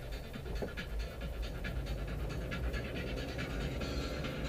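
Car cabin noise while driving: a steady low engine and road rumble with a fast, irregular rasping pulse over it, several times a second.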